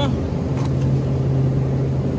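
Steady low hum of a refrigerated supermarket meat case, with a light rustle of vacuum-sealed plastic packaging as a roast is turned over.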